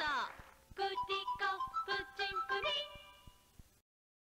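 A high-pitched singing voice opens with a falling swoop, then sings a quick run of short separate notes. The singing fades and cuts to silence near the end.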